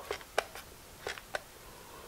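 A potato slid across a mandoline slicer's blade over a glass bowl: about six short, light clicks in the first second and a half, the loudest about half a second in.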